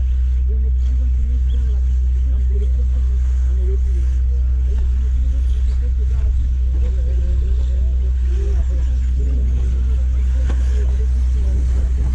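A loud, steady low hum with faint voices talking over it.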